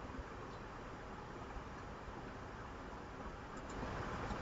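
Quiet room tone: a faint, steady hiss with a couple of small ticks.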